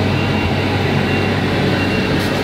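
Elgin Crosswind regenerative-air street sweeper running right beside the car: a loud, steady drone of its engine and air blower with a deep hum, heard from inside the car, with a thin high whine coming and going above it.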